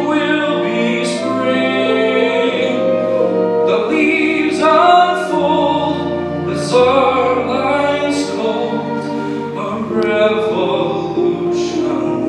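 Male voice singing a slow musical-theatre ballad over orchestral accompaniment.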